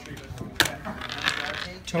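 Small hard plastic game pieces clicking on a wargame tabletop: one sharp click about half a second in, with a few lighter clicks around it.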